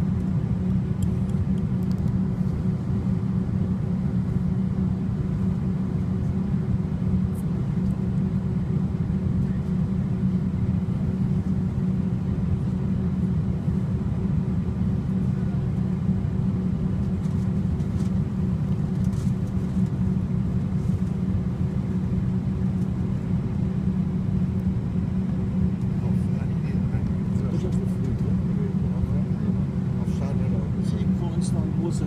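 Steady low drone of an airliner cabin while taxiing, from the jet engines at low power and the cabin air system, with a constant hum running through it.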